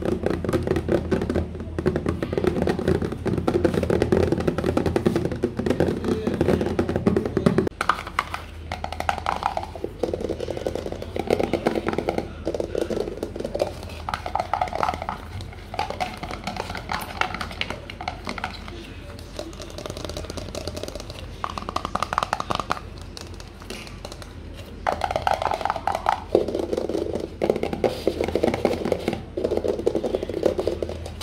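Rapid fingertip and fingernail tapping on hollow plastic: first a plastic spray bottle with a fuller, lower ring, then, from about eight seconds in, an upturned green plastic bowl whose pitch shifts as the fingers move over it.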